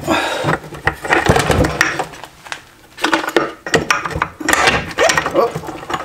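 Irregular knocks, clinks and scrapes of metal as the rear half of an aluminum NP242 transfer case is worked up and off the front half and its drive chain.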